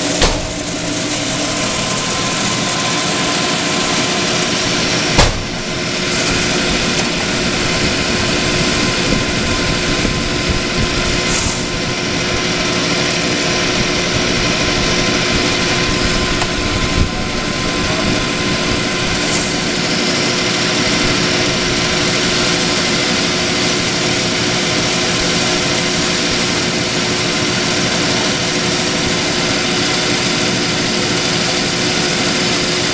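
Clausing 6903 metal lathe running under power with its variable-speed drive while a carbide tool takes a cut on a steel bar: a steady running noise with a held hum. Two short sharp clicks break through, about five seconds in and again about seventeen seconds in.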